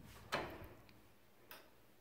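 Iron lever-handle latch on a wooden plank door clicking as the handle is turned and the door opened: one sharp click about a third of a second in, then a much fainter tick about a second and a half in.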